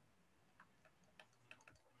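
Near silence, broken by a few faint, light ticks that come irregularly through the second half, fitting a stylus tapping on a tablet screen as digits are written by hand.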